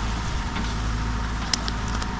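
Diesel engine of a Caterpillar backhoe loader running steadily, with one sharp click about one and a half seconds in.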